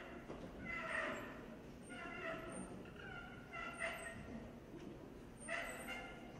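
A high-pitched voice making four short calls with wavering pitch, about a second and a half apart, over a low murmur of the hall.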